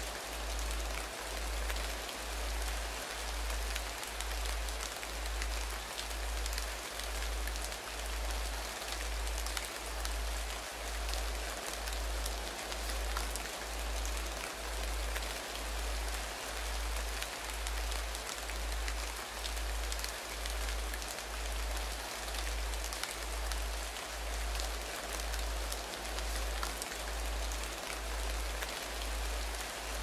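Steady rain falling, a fine pattering over an even hiss. A deep tone pulses beneath it about once a second.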